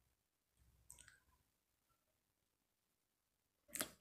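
Near silence, with a faint click of scissors cutting paper about a second in and another short click just before the end.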